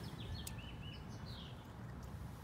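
Faint outdoor background noise with a quick run of short, high bird chirps in the first second, and a single sharp click about half a second in.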